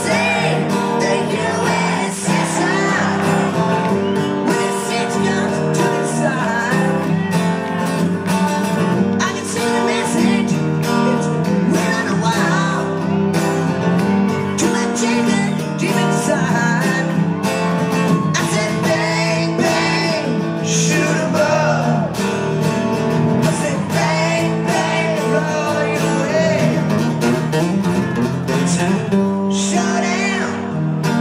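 Live acoustic rock band playing: several acoustic guitars strummed and picked under a male lead vocal, steady and continuous.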